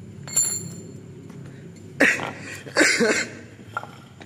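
A short click with a faint high ring near the start, then a person coughing twice, about two and three seconds in, the second cough longer.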